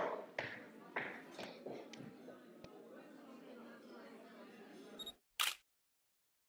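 Several sharp clicks and knocks of things being handled on a table, fading to quiet room tone. About five seconds in the sound cuts out, there is one brief burst of noise, and then there is total silence.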